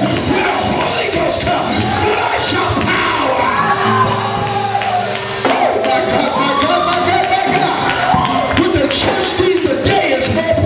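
Church music with a man singing or chanting over it, the congregation calling out. A low held chord sounds for about a second and a half near the middle.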